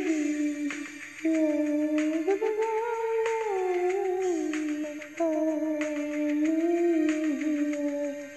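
Karaoke music for a Korean trot ballad: a single smooth melody line, hummed or played, moving in steps and small glides over a soft accompaniment, with no sung words.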